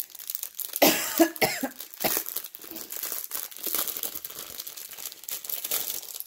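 A person coughs a few times about a second in, then the crinkle of plastic bags of diamond-painting rhinestones being handled.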